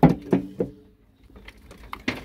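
Stones knocking against the steel of a stopped jaw crusher as they are moved by hand: three sharp knocks with a short metallic ring close together, a pause, then another knock near the end.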